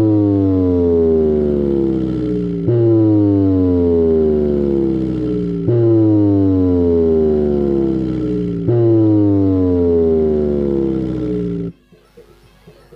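6-inch woofer in a wooden bass cabinet playing a deep bass test tone: a falling note repeated four times, each about three seconds long, that cuts off suddenly shortly before the end.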